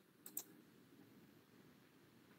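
Two quick computer mouse clicks, close together near the start, over faint room hiss.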